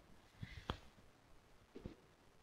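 Near silence with room tone and a few faint, short clicks, the clearest about a third of the way in.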